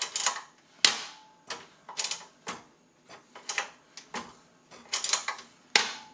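Top-plate height-adjustment slider on a SilverCrest SKGE 2000 C3 contact grill being moved through its five positions, giving a string of sharp clicks at irregular intervals.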